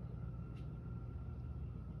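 Steady low background hum with faint hiss: garage room tone, with one faint tick about half a second in.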